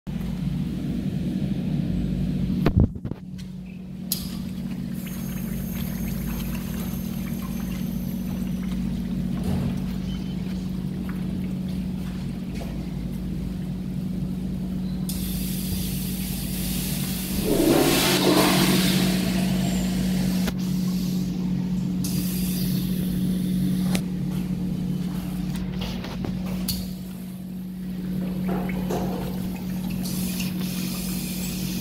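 Public restroom with a steady low hum. A sharp knock comes about three seconds in, and at about seventeen seconds a rush of water, like a flush, rises for a few seconds and then eases off.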